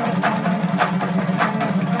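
Dambura, the two-string long-necked Afghan lute, strummed rhythmically. Its strings ring on steadily under about two strong strokes a second, with lighter strokes in between.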